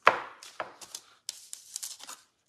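A paint-covered marshmallow Peep being pressed and dabbed onto paper in a plastic tray: a sharp tap at the start, then a few short scratchy rustles.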